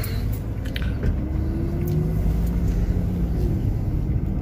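A car driving slowly, heard from inside the cabin: a steady low rumble of engine and tyres, with a faint hum rising slightly in pitch through the middle and a few light clicks near the start.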